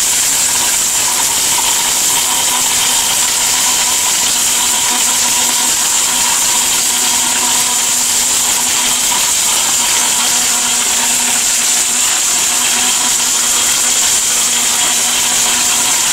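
ORPAT mixer grinder with a stainless steel jar running continuously, grinding its contents at one steady speed: a constant motor hum under a loud high hiss.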